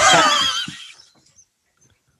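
A man laughing with a wavering, warbling pitch that trails off and fades out about a second in.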